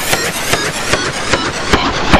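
Klasky Csupo logo cartoon sound effects, heavily distorted and stacked in pitch-shifted copies: a rapid clattering run of pops and blips, about six a second.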